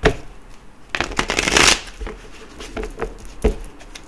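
A deck of archetype oracle cards being shuffled by hand: a sharp snap at the start, then a dense flutter of cards lasting under a second, followed by scattered clicks.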